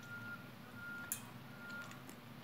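A faint electronic beeper sounding three short, even beeps at one steady pitch, about one every three-quarters of a second. A single sharp click comes about a second in.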